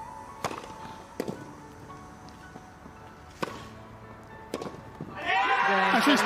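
Tennis rally on a grass court: a racket strikes the ball four times, with gaps of one to two seconds, over faint background music. About five seconds in, a crowd breaks into loud cheering as the winning point ends.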